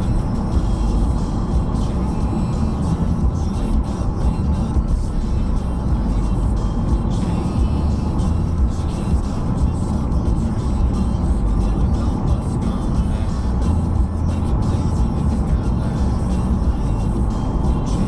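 Steady low rumble of road and engine noise from inside a moving car, with music playing over it.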